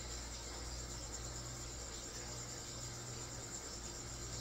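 Faint, steady chirping of feeder crickets over a low, even hum.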